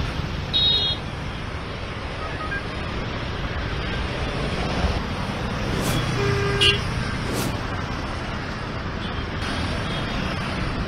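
Street traffic noise, a steady rush of vehicles, with two brief car-horn toots: a short high one about half a second in and a lower one just after six seconds.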